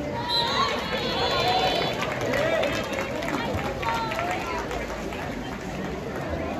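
Spectators at a water polo game shouting and calling out, several voices overlapping with no clear words, loudest in the first two seconds and again about four seconds in.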